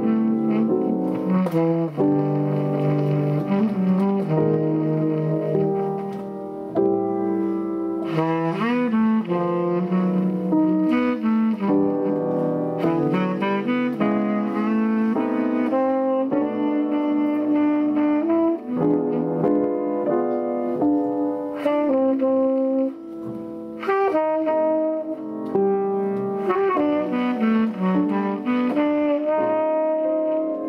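Tenor saxophone playing a jazz line with piano accompaniment, with bent notes and brief breaks between phrases.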